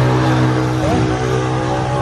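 A motor or engine running steadily at one pitch: a deep hum with a stack of even overtones above it.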